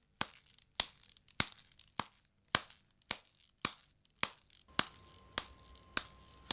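Footsteps at a steady walking pace, a little under two sharp steps a second, each a crisp short click with quiet between.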